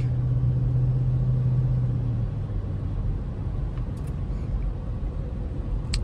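Chrysler 300 driving, heard from inside the cabin: a steady low engine note that drops away about two seconds in, leaving the low rumble of tyres and road.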